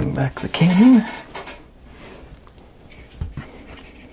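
Laser-cut wooden model parts knocking and clattering as they are handled and set down on a work mat, loudest in the first second and a half. A short wavering hum from a person's voice sounds under the clatter.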